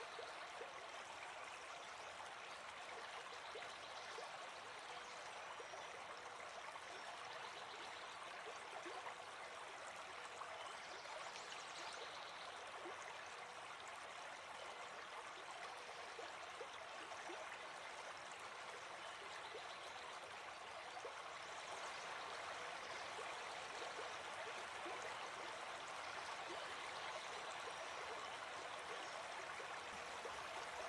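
Faint, steady sound of a flowing stream, growing a little louder after about twenty seconds.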